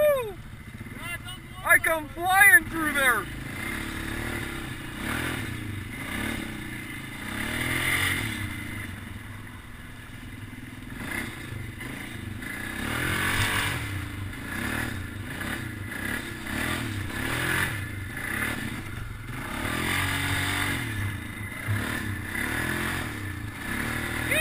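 ATV engine running on a rough trail, its pitch rising and falling with the throttle, with scattered knocks from the machine over the ground. A few loud, high, wavering tones come about two to three seconds in.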